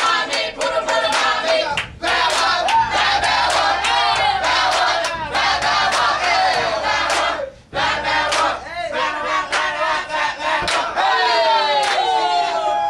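A crowd of young men shouting and hyping, with hand claps throughout. The sound drops out briefly twice.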